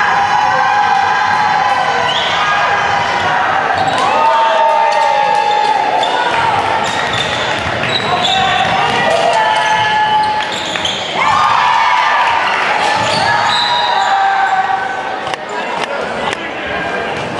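Basketball game in a school gym: a basketball bouncing on the hardwood court, with players and spectators shouting and calling out throughout.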